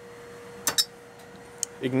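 Two quick sharp clicks, close together, about two thirds of a second in, as a small engine's flywheel is turned over in gloved hands, followed by a fainter click shortly before speech resumes.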